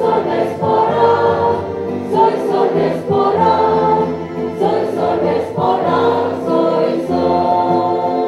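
Mixed church choir singing a hymn into microphones, many voices together on long held notes in phrases a second or two long.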